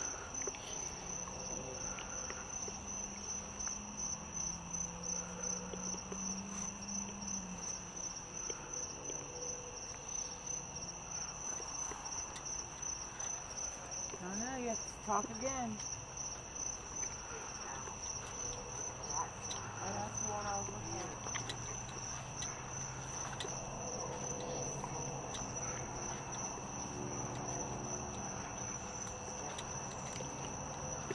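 Crickets trilling in a steady, unbroken high-pitched chorus.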